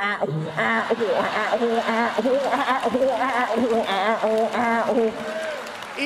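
A man vocalizing a song's melody into a handheld microphone without words, in short phrases that repeat in an even rhythm over a held note.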